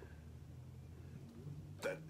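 Faint room tone with a steady low hum, broken near the end by a short breath or voice sound from one of the readers, such as a stifled laugh.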